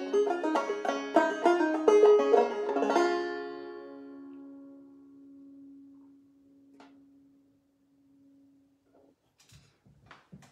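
Old-time open-back banjo playing the last bars of a tune, stopping about three seconds in; the final low note rings on and fades away over several seconds. A few soft knocks near the end.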